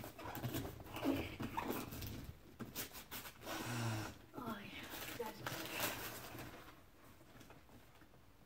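Wrapping paper crinkling and tearing in irregular bursts as gifts are unwrapped, under indistinct low voices; it dies down near the end.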